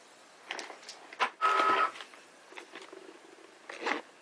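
Things being handled and moved around on a desk: a few light knocks and rustles, with a brief steady-pitched squeak about one and a half seconds in.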